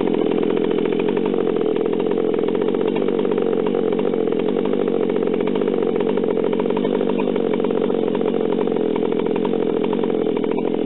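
Stihl two-stroke chainsaw idling steadily at about 2,760 rpm, held close, shortly after being started.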